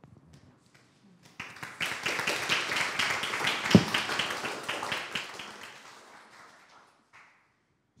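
An audience applauding: the clapping starts about a second and a half in, swells, then dies away over a few seconds. There is one louder knock midway.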